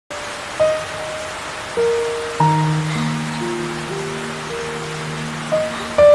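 Slow, gentle background music, single held notes entering one after another, over a steady hiss of rain.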